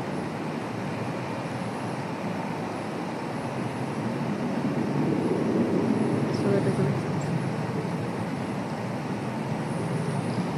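Steady rumbling background noise with no clear speech, swelling slightly about halfway through.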